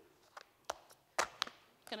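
A few short, sharp clicks and taps from a small plastic cup of black beans and its lid being handled on the table.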